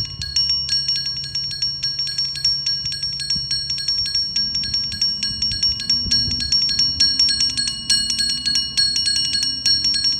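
Metal bars of a tabletop sonic sculpture struck with mallets in a fast, dense run of strikes, several bright bell-like tones ringing on and overlapping. A faint low hum sits underneath.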